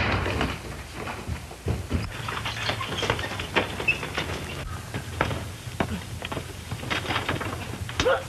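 Scuffling, knocks and thuds of a struggle and fistfight, irregular and scattered throughout, over the steady low hum of an old film soundtrack.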